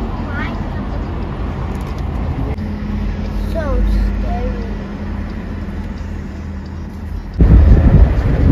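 Car interior road noise while driving through city traffic: a steady low rumble of engine and tyres, with a few short gliding tones. Near the end a sudden, much louder, rougher rumble takes over.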